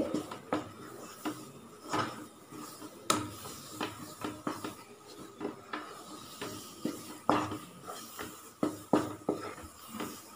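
A wooden spatula scrapes and knocks against a nonstick pan while thick mango burfi mixture is stirred and folded, in irregular strokes. The mixture has cooked down to the stage where it gathers into a ball and no longer sticks to the pan.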